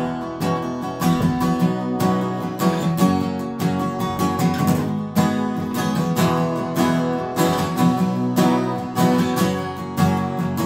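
Two steel-string acoustic guitars strumming together in a steady, even rhythm, playing an instrumental song opening without vocals.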